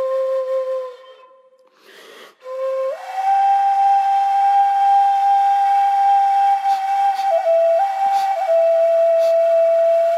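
Long, steady whistle-like notes from a wind instrument. The first note fades out about a second in and comes back briefly. A higher note is then held from about three seconds in and drops a small step about two-thirds of the way through.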